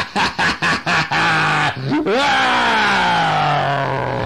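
A man's theatrical monster voice: a rapid run of choppy laughter for the first second and a half or so, then a long drawn-out roar that slowly falls in pitch.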